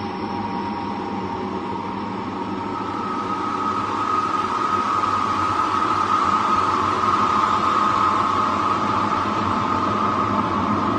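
The 'Well to Hell' tape, claimed to be screams recorded from a Siberian borehole: a steady noisy roar, with a higher band of sound growing louder about four seconds in.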